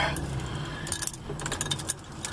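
Light, irregular metallic clicks and clinks inside a slowly moving car, over a low rumble from the car.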